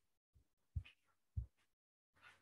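A few short, soft thumps over near quiet, typical of mouse clicks and keystrokes at a computer desk picked up by the microphone, the two loudest about a second in and near the end.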